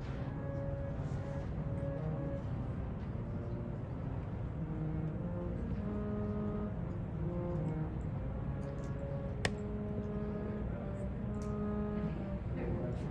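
Harmonium playing a slow melody of held reed notes that step from one pitch to the next, over a steady low rumble. A single sharp click about nine and a half seconds in.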